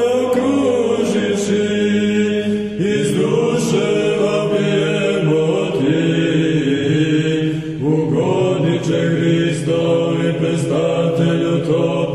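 Serbian Orthodox church chant sung by a choir: a slow melody over a sustained low drone note.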